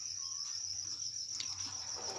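Steady high-pitched trilling of crickets with a faint low hum under it, and a single light click about a second and a half in.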